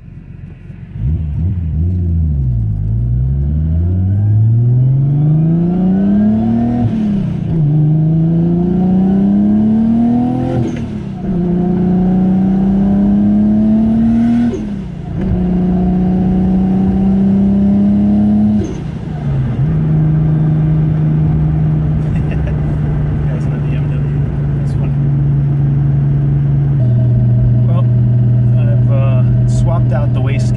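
Nissan Skyline GT-R's RB26 inline-six, converted to a single turbo, accelerating through the gears, heard from inside the cabin: the engine note climbs, falls back at four gear changes with a short sharp sound at each shift, then settles into a steady cruise.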